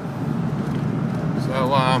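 Steady engine and road noise inside the cabin of a Mini being driven, its automatic gearbox slipping badly, which the owner calls knackered.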